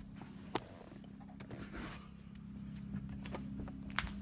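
Quiet low steady hum with a few faint clicks and rustles of handling, one sharper click about half a second in.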